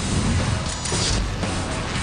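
Action-film sound effects from a movie clip: a loud, dense rumbling, crackling noise from an explosion, with music underneath.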